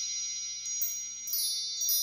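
Wind-chime sound effect: high, bright chime tones struck several times, each ringing on and overlapping the next.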